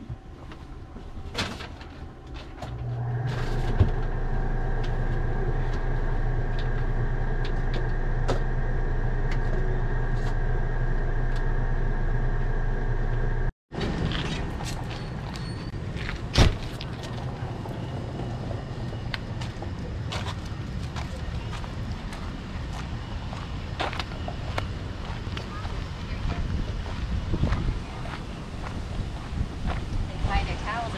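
RV rooftop air conditioner starting up: the fan comes on about three seconds in and the compressor joins a moment later, then a steady hum with a fixed tone. After an abrupt cut about halfway through, outdoor footsteps and handling knocks over light wind.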